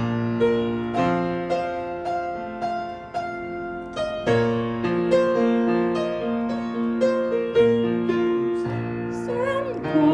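Piano accompaniment to an Italian art song playing an instrumental interlude between sung phrases: evenly pulsed repeated chords under a simple melody. The singing voice comes back in right at the end.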